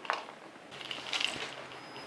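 Handling noise from a small toy helicopter model being moved over a paper sheet on a table: a couple of light clicks at the start, then a brief scraping rustle about a second in.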